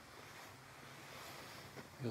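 Near silence: a faint steady background hiss with a low hum underneath, and a small click shortly before the end.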